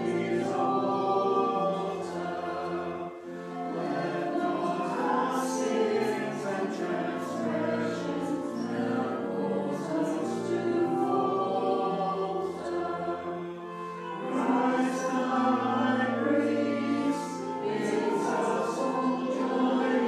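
Congregation singing a hymn together, in phrases of held notes over a steady low accompaniment, with short breaks between lines.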